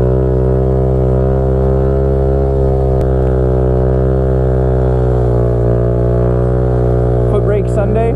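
Honda Grom's 125 cc single-cylinder engine held at steady revs during a long wheelie, a steady unchanging drone. A voice starts shouting near the end.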